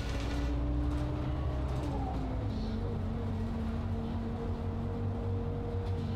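City bus heard from inside the cabin: a steady low engine drone with a thin whine that drops in pitch about two seconds in.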